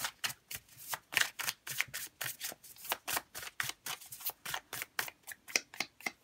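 A tarot deck being shuffled by hand: a rapid, irregular run of short card clicks and slaps, several a second.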